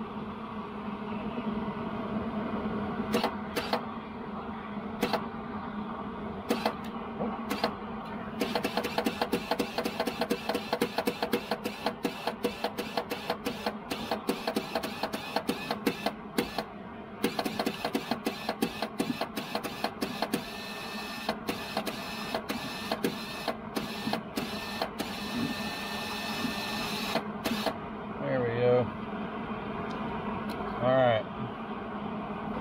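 MIG welder's wire-feed motor running, a steady hum, with rapid clicking from about eight seconds in as wire is fed through the drive rolls to the gun.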